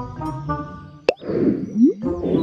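Cartoon background music with a sharp pop a little past halfway, followed by a short scratchy sound effect that ends in a quick rising squeak.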